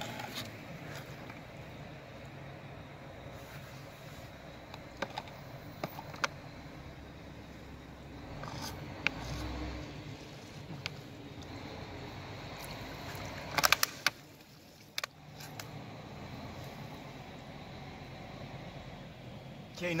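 A steady low background rumble, with scattered light knocks and clicks from handling the small wooden boat and its plastic Coke bottle at the dock edge, and a quick cluster of sharp clicks about two-thirds of the way through.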